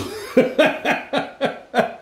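A man laughing hard: a sudden burst, then a steady run of short breathy 'ha' pulses, about four a second.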